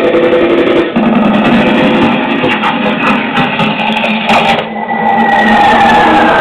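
Lo-fi soundtrack music with guitar. In the second half a single held tone slides slowly downward.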